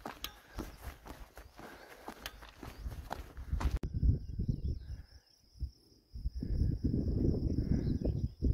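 A walker's footsteps and rustling on a dirt trail, with the phone being handled, for the first few seconds. After a sudden cut comes open-field ambience: low wind rumble on the microphone, a faint steady high tone and a few faint chirps.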